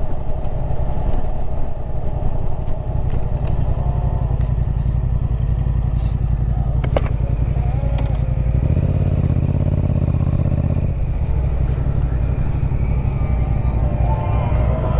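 Yamaha MT-07's 689 cc parallel-twin engine running through an aftermarket Yoshimura exhaust, a steady low rumble from the moving motorcycle. The engine gets louder for about two seconds a little past the middle, then settles back.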